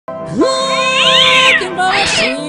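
A man singing into a microphone over a sustained backing chord. His voice slides up into a long held note, and a higher wail slides up and then down over it about halfway through.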